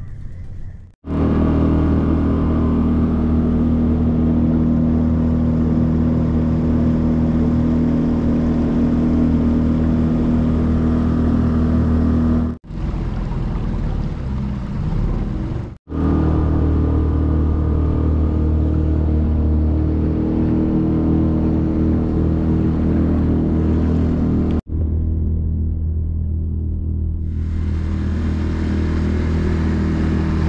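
A small boat's motor running steadily underway, a continuous low drone with a steady pitch. It is broken by several sudden brief cutouts, with its pitch and level changing slightly from one stretch to the next.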